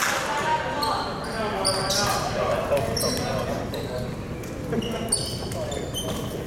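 Gym sounds between volleyball rallies: many short, high sneaker squeaks on the hardwood floor, a ball bouncing, and players' voices, all echoing in the large hall.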